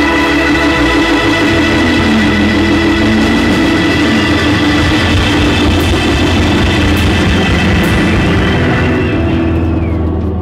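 Live rock band (electric guitar, bass, keyboards and drums) playing a loud, held chord with sustained tones ringing over a steady bass, which begins to die away near the end.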